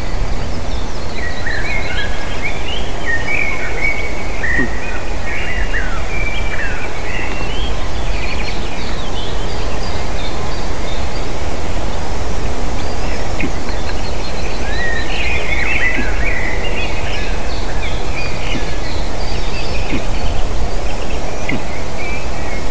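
Steady low rumbling noise on the outdoor nest-camera microphone, with small birds in the surrounding forest chirping and whistling in two spells: one starting about a second in, the other from about thirteen seconds.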